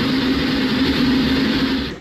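Steady machine noise: a low hum under a loud, even rushing. It cuts off suddenly at the end.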